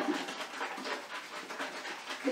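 Liquid sloshing in a plastic spray bottle shaken back and forth in a quick rhythm, mixing water with hair conditioner and a few drops of essential oil until the conditioner dissolves.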